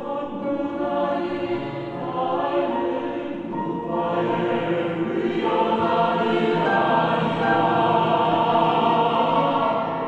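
Mixed choir singing a slow Korean choral song in close harmony, swelling louder from about four seconds in and easing off at the close of the phrase near the end.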